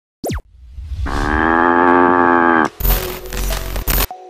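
Channel-ident sound effects: a quick falling swoosh, then a long cow's moo held for nearly two seconds, then a noisy rush with a deep rumble.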